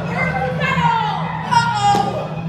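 Young voices cheering and calling out, with one long held cry starting about half a second in that falls in pitch near the end, over a low steady hum.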